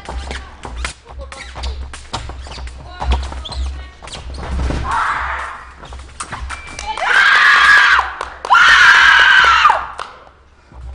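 Sabre fencing exchange: rapid sharp clicks and taps from blades and quick footwork on the piste, a short shout about five seconds in, then two long, loud, high shouts from a fencer after the touch near the end.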